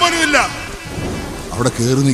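A male kathaprasangam storyteller's voice falling away, then about a second of even noisy rush with no voice, before a voice comes back in on a steady held pitch near the end.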